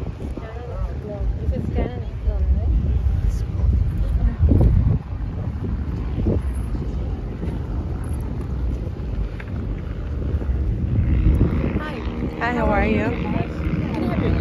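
Wind rumbling on the microphone, with people talking in the background; a voice says "yeah" near the end.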